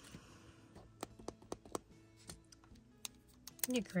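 A string of light, irregular clicks and taps from plastic Zebra Sarasa Clip gel pens being handled and picked up, over faint background music.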